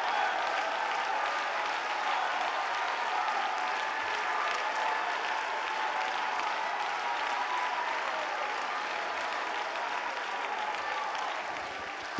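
Church congregation clapping and shouting praise together, a steady sustained wash of applause and voices that eases slightly near the end.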